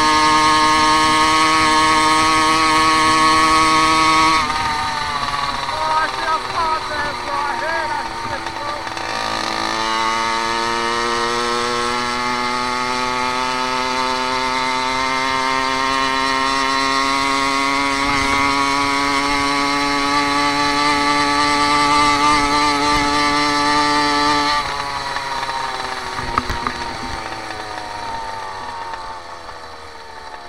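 Two-stroke Phantom motorized-bicycle engine buzzing at high revs under throttle; its pitch drops away about four seconds in as the throttle is eased, picks up again near ten seconds and climbs slowly as the bike gathers speed, then falls off near the end as it coasts.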